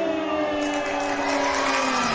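A crowd cheering with long drawn-out shouts at several pitches, falling slowly, as a bunch of balloons is let go at the end of a countdown.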